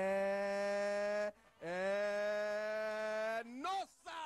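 A person's voice holding a long, steady note twice, each about a second and a half, with a brief gap between them. A short rising-and-falling vocal swoop comes near the end.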